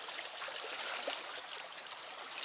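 Faint, steady wash of sea water lapping against the rocks of a seawall.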